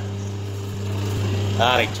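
Hydraulic paper plate making machine's motor-driven power pack running with a steady low hum; a short spoken word comes near the end.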